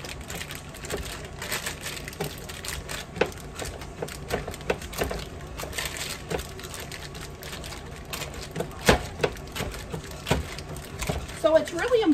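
A block of cheese grated by hand on a metal box grater: repeated irregular rasping scrapes, stroke after stroke.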